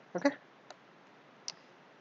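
Two single key clicks on a computer keyboard, a little under a second apart, as a character is typed.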